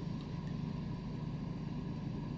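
Steady low background hum with faint hiss: the room tone of the recording between phrases.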